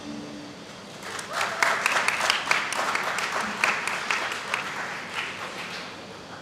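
Audience applause at the end of a song: the band's last ringing notes die away, and clapping starts about a second in, then tails off near the end.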